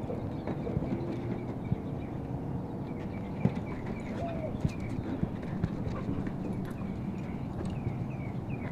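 Dogs' paws and claws clicking and scrabbling on a brick patio as two dogs play and chase, with scattered sharp knocks over a steady background hiss.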